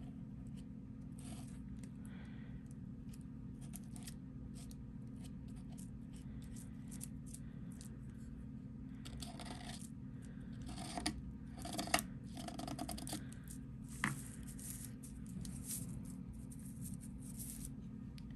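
Metal palette knife scraping and spreading modeling paste across a plastic stencil on paper: soft, irregular scrapes with a few sharper clicks, busiest in the middle, over a steady low hum.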